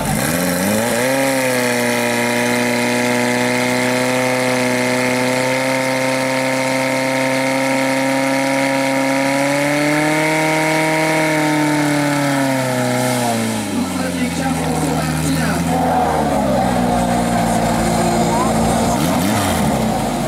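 Portable fire pump engine revving up to high speed within the first second and holding there while it pumps water to the nozzles. It climbs a little higher about ten seconds in, then drops back to a lower speed between about thirteen and fourteen seconds in as the run ends.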